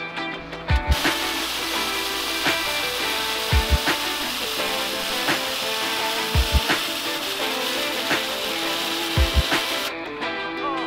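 Electric arc welding on a motorcycle frame bracket: a steady hiss that starts about a second in and cuts off sharply at the end, under background guitar music.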